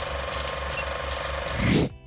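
Film projector clatter sound effect: a steady mechanical rattling of fine rapid ticks over a hum, swelling about a second and a half in and then cutting off abruptly.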